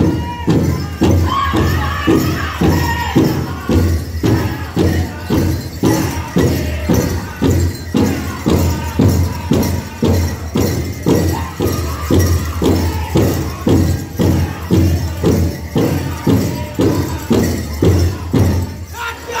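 Powwow big drum beaten by a drum group in a steady beat of about two strokes a second, with the men singing a fast dance song over it. Bells and jingles on the dancers' regalia rattle along with the beat.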